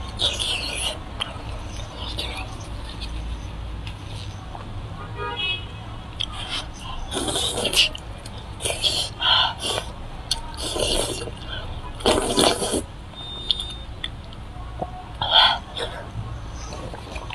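Close-miked biting and chewing of braised pork leg: wet, sticky mouth sounds in short bursts every second or two, thickest in the middle and once more near the end, over a steady low hum.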